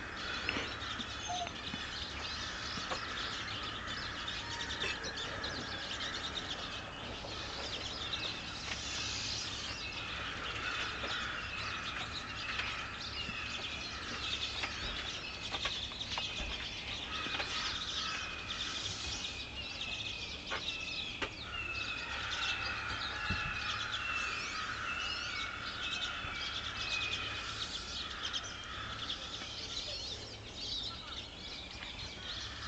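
Outdoor bird chorus: American crows cawing in the background, with high twittering from pine siskins and American goldfinches. From about ten seconds in, a steady series of short falling calls from another bird repeats about twice a second until near the end.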